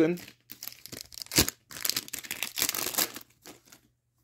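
A card pack's wrapper being torn open and crinkled by hand, with a sharp rip about a second and a half in followed by a stretch of crinkling.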